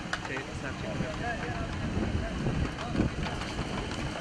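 Faint voices of people talking in the background over a steady outdoor noise with a low rumble, and a few small clicks and knocks.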